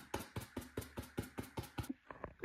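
Rapid light taps of a small dry paintbrush dabbing against a painted foam board, about six or seven a second.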